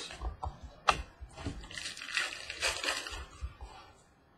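Handling and tearing open a trading-card pack: crinkling and crackling of the pack wrapper, with a sharp click about a second in.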